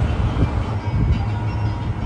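Passenger lift running, heard from inside the car: a steady low rumble and hum that settles in under a second in.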